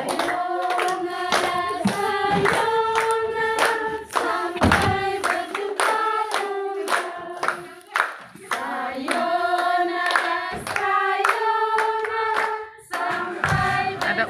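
A group of women singing a song together in long held notes, clapping their hands along to a steady beat.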